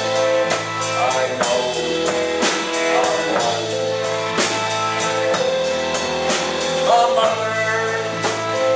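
Live band playing a blues-rock jam: electric guitars, drum kit and keyboard, with a male lead vocal.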